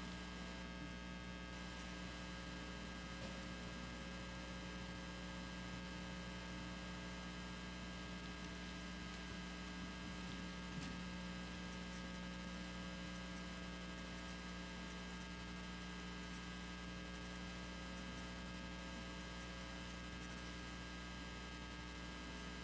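Steady electrical mains hum with faint hiss, no other sound of note.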